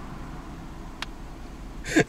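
A pause in talk inside a car cabin: low, steady background rumble, with a single faint click about a second in and a short breathy hiss near the end.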